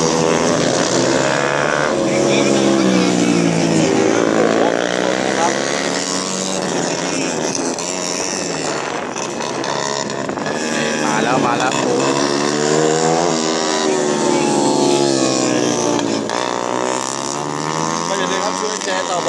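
Several 150 cc racing motorcycles running around the track, their engine notes repeatedly falling and rising in pitch as the bikes rev through the corners and go past.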